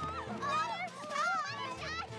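Several high-pitched young girls' voices squealing and cooing without words, over background music with sustained low notes.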